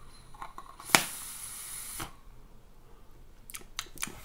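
A draw on a Squape atomizer fired on a DICODES Dani Extreme V2+ box mod: a sharp click about a second in, then about a second of steady hissing air and coil, ending with a softer click.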